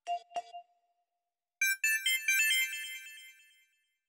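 Two short electronic blips about a third of a second apart, then a mobile phone ringtone: a quick run of high, bell-like notes that fades out after about two seconds.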